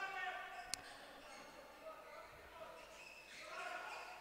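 Faint sports-hall sound: a handball bouncing on the court a few times, with distant players' voices and a sharp click echoing in the hall.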